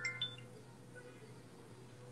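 Quiet pause: a faint steady low hum, with a brief faint high tone a fraction of a second in.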